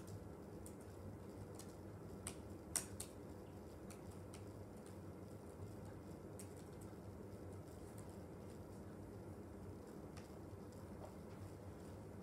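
Faint, sparse typing on a laptop keyboard: scattered short key clicks over a low steady room hum, with a few louder taps about two to three seconds in.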